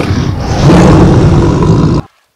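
Male African lion roaring, a deep rumbling roar that grows louder about half a second in and cuts off suddenly at the end.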